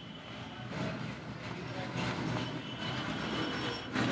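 Marker pen drawing on a whiteboard: faint squeaking and scraping strokes over a low steady background rumble.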